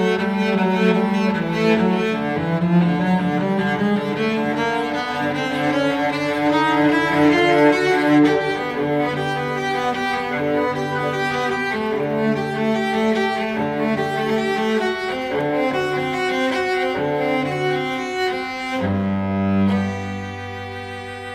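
Background music of bowed strings, led by cello with low sustained notes beneath, playing slow held notes.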